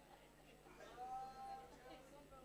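Near silence with a low steady hum. About a third of the way in, a faint voice draws out one held sound for about a second.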